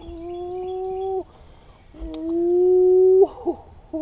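A man's drawn-out laughter, held as two long, high, steady cries of a bit over a second each. The second cry is louder and rises slightly before breaking off.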